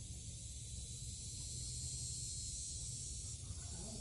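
Faint steady outdoor background: a high hiss with a low rumble beneath it, and no distinct events.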